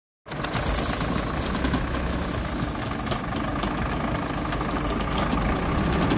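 Tractor diesel engine running steadily under load, driving a rear-mounted post-hole auger as it bores into dry soil, with scattered light ticks over the engine rumble.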